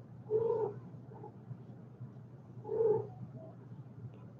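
A kitten hiccuping twice: two short squeaks about two and a half seconds apart.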